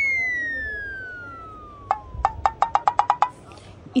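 Cartoon-style comedy sound effect: a whistle falling steadily in pitch over about two seconds, then a run of about ten quick knocks that come faster and faster until they stop.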